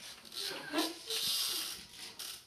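Hushed, whispered voices, then a drawn-out hissing 'shhh' for most of a second in the second half.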